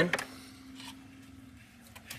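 Quiet, with a few faint clicks of a screwdriver driving a small screw into the Jeep's plastic dash panel, over a faint steady hum that stops about a second and a half in.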